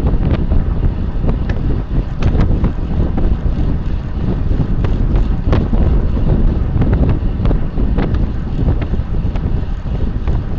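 Wind rushing over the microphone of a bicycle-mounted camera at race speed: a loud, steady low rumble with a few scattered sharp clicks.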